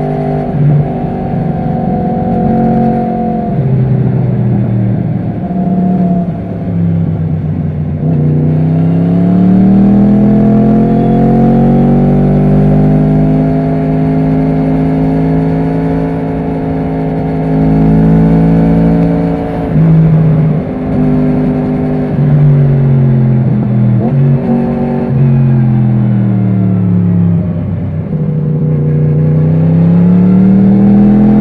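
Yamaha MT-10's crossplane inline-four engine pulling along on the road, its pitch climbing and falling several times as the throttle opens and closes through the gears, with wind rush underneath.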